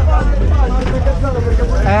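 Young men's voices talking over a steady low rumble.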